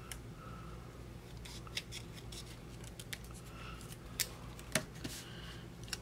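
Small scissors snipping paper stickers: a handful of scattered, sharp snips with light paper rustling in between.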